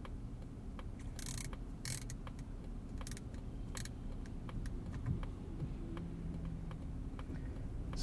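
Quiet cabin of a 2020 Mazda CX-30 standing still in traffic: a low steady hum with light scattered clicks and a couple of brief rustles.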